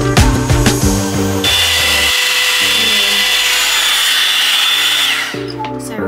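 Background music with a beat. About a second and a half in, a Bondi Boost Blowout Tool hot air brush starts up over the music: a steady rush of air with a high whine. Near the end the whine falls away as the motor winds down.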